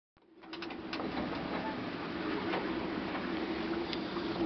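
Steady rushing noise of wind and sea heard from inside a small sailboat's cabin under way, with a low steady hum underneath and a few clicks in the first second.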